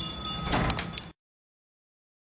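A wooden wardrobe door being moved open, with a short rasping scrape about half a second in. Just after a second the sound cuts off abruptly to dead silence.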